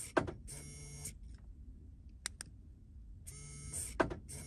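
SwitchBot Bot's small motor whirring as its arm pushes the van door's central-locking button and pulls back, with a sharp click at each press. It cycles once right at the start and again near the end.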